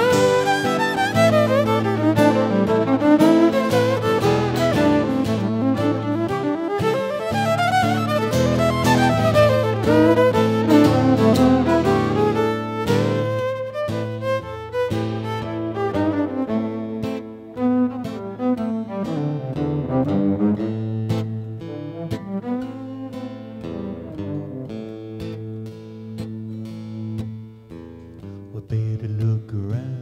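Instrumental break of a live folk-rock song: a bowed fiddle plays a solo over acoustic guitar. The playing is loud at first and drops to a quieter level about halfway through.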